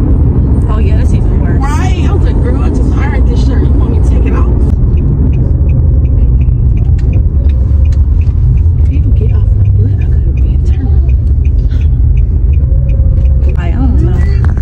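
Steady low road rumble inside a car's cabin as it drives. A voice talks over it in the first few seconds and again near the end.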